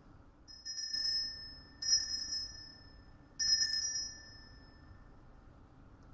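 Altar bell rung three times, each a bright, high ring that fades over about a second, marking the elevation of the host just after the consecration.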